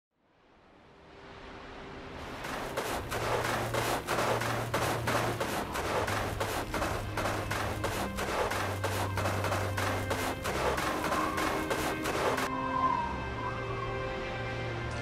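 Soundtrack music fading in from silence, carried by low sustained tones. About two seconds in it is joined by a dense, irregular crackle of distant massed small-arms fire, which cuts off suddenly about a second and a half before the end, leaving the music.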